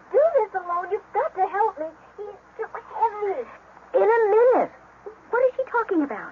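Voices in a radio drama, speaking in short phrases with brief pauses.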